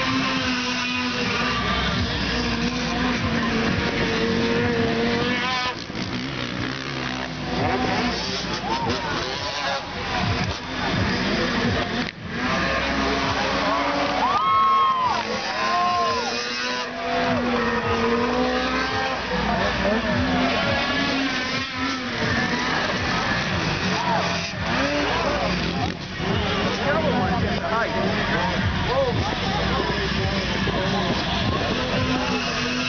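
Freestyle snowmobile engines revving, their pitch climbing and falling again and again, with the highest revs about halfway through. A voice can be heard underneath.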